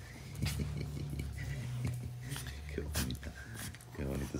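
Small dogs play-biting each other on a pet bed, with a low steady rumble and soft clicks and rustles.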